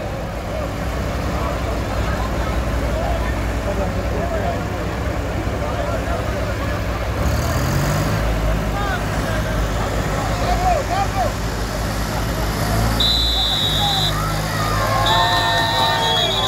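Tractor diesel engines idling under the chatter of a large crowd, with a brief rise in engine speed about eight seconds in. A high steady tone sounds twice near the end.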